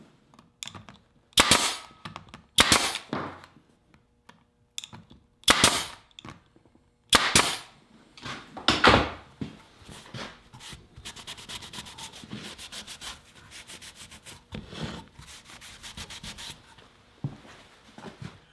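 Bostitch pneumatic nailer firing five times, one shot at a time, driving 1-inch nails into a glued mitered picture-frame corner. Then a rag wiping quickly back and forth over the wood.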